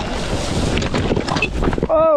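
Wind buffeting the microphone with a rough rattle and many small knocks as a Sur-Ron electric dirt bike rides over bumpy ground through tall dry grass, ending as the bike goes down into the grass.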